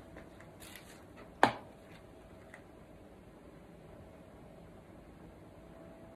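Quiet room tone with faint handling rustles and one sharp click about a second and a half in: small containers being handled on a worktable.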